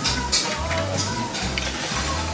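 Background music with a repeating bass line and light percussion.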